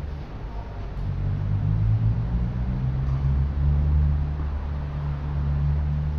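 A low mechanical drone, like a motor or engine running, that grows louder about a second in and eases off near the end.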